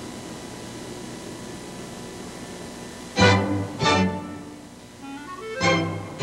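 Ballet orchestra starting up: about three seconds of steady hiss, then two short, loud full chords from strings and orchestra, a quick rising run of notes, and another loud chord near the end.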